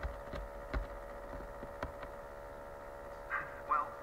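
A pause in the dialogue: a steady low hum runs throughout, with a few sharp clicks in the first couple of seconds. A short snatch of voice comes near the end.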